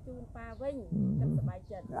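A man's voice talking in Khmer, with a long wavering drawn-out vocal sound about a second in and a steeply falling cry near the end.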